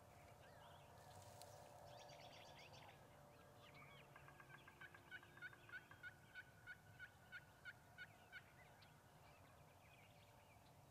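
Faint wild turkey calling: a run of about a dozen evenly spaced yelps, roughly three a second, in the second half.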